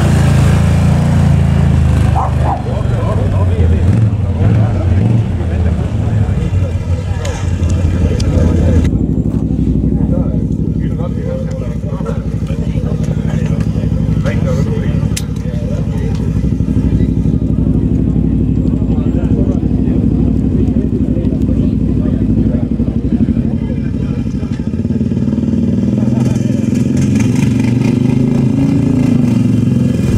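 Quad bike (ATV) engines running at idle and low revs as the machines move off. The low engine drone is louder and rougher for the first several seconds and steadier after that.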